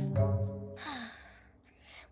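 Background music with held notes dying away, then a child's breathy sigh about a second in, fitting frustration after a failed dance turn.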